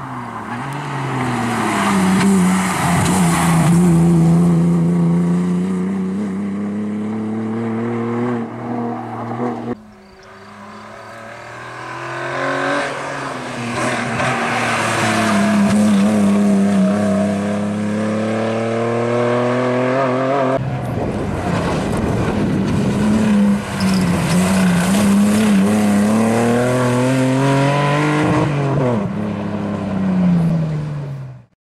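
BMW E36 saloon's engine revving hard, its pitch climbing and dropping with throttle and gear changes, with tyre squeal as the car slides. The sound breaks off sharply twice, about 10 and 21 seconds in, where the footage cuts.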